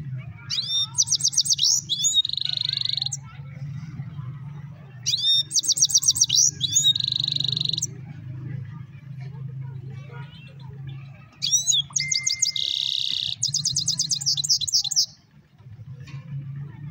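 Caged European goldfinch singing three bursts of song. Each burst is a quick run of high, twittering notes that ends in a buzzy trill.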